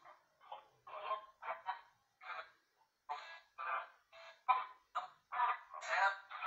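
Spirit box app on a phone sweeping through radio fragments: short, chopped bursts of voice-like sound, several a second with brief gaps between.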